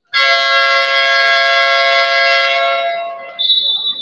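Basketball arena buzzer sounding a loud steady electronic horn chord for about three seconds, then trailing off. A referee's whistle blast cuts in near the end.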